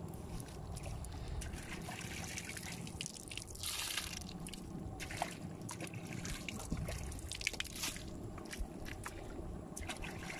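Small wet sounds of water dripping and trickling on mud, with scattered faint clicks over a steady low rumble and a brief hiss about four seconds in.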